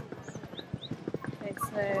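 Rapid, irregular clacking of hard steps or wheels on paving stones, several clicks a second, with voices of passers-by and a laugh near the end.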